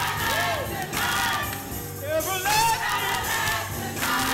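Gospel choir singing with music playing underneath.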